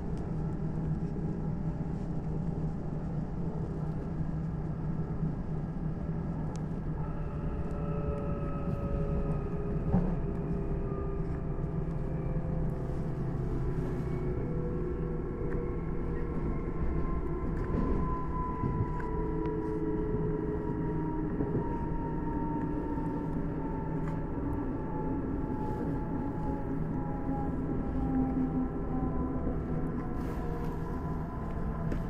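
Interior running noise of an electric S-Bahn commuter train: a steady low rumble with the traction motors' whine. The whine slowly falls in pitch through the second half as the train slows. A single sharp knock sounds about a third of the way in.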